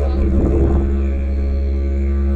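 Background music: a didgeridoo playing a steady low drone, swelling briefly about half a second in.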